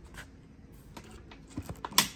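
Light scattered clicks and taps of a coaxial speaker being handled and seated in a plastic speaker pod, with one sharper click near the end.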